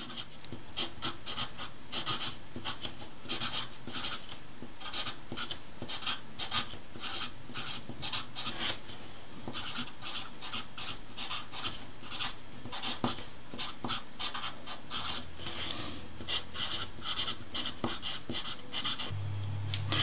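Pencil scratching on paper as cursive letters are written, in quick runs of short strokes with brief pauses between them.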